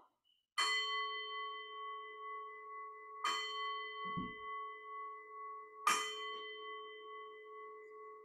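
A bell struck three times, about two and a half seconds apart, each strike ringing on with a clear steady tone that slowly fades. It is rung at the elevation of the consecrated bread during the Words of Institution. A soft thump falls between the second and third strikes.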